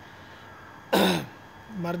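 A man's single short cough, clearing his throat, about a second in.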